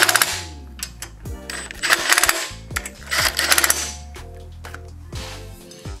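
Cordless impact driver hammering in three short bursts, near the start, about two seconds in and about three and a half seconds in, as it runs down the bolts of a small engine's valve cover. Background music plays throughout.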